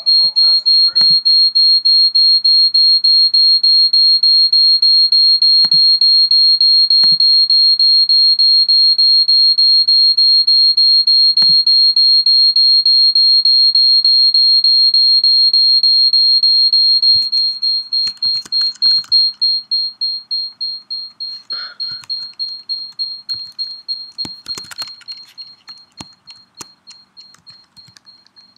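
A high-pitched audio feedback tone from a speaker-to-microphone loop, pulsing rapidly several times a second like a repeating echo. It holds steady and loud, then about two-thirds of the way through it starts fading away pulse by pulse.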